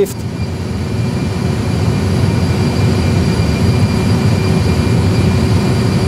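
Airbus A320 simulator's engine sound at alpha-floor TOGA thrust, about 93% N1: a steady, loud low rumble with a faint high whine, building slightly over the first second or two.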